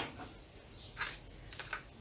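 Quiet handling of small items on a workbench, with one short soft tap about a second in.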